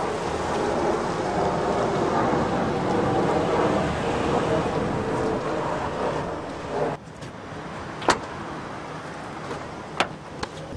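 A car engine running close by amid street noise, cutting off abruptly about seven seconds in; a single sharp click follows about a second later.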